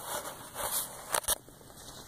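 Footsteps crunching and rustling on dry dirt and grass, with two sharp clicks a little past the middle.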